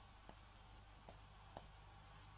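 Faint squeak and scratch of a felt-tip marker drawing on a whiteboard in several short strokes, with a few light taps of the pen on the board.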